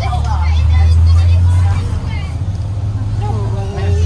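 School bus engine and road rumble heard from inside the bus cabin: a steady low drone, with children's voices faintly over it.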